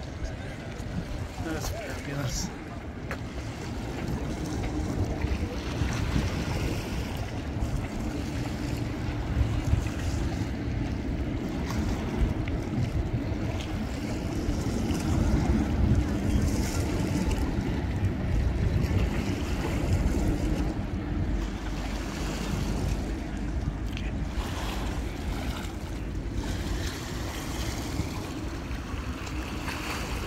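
Wind buffeting the microphone as a steady low rumble, with faint voices of people walking by.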